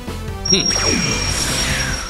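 Cartoon reveal sound effect over background music: a bright hit about half a second in, then a long, high, shimmering ring with a falling sweep beneath it, cueing the unveiling of a finished creation.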